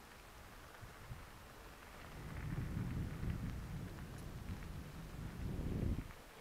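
Wind buffeting the microphone of a camera on a moving bicycle: a low, uneven rumble that starts about two seconds in and cuts off suddenly at the end.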